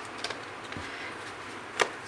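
Tarot cards being handled and laid out on a table, with one sharp tap near the end as a card is put down.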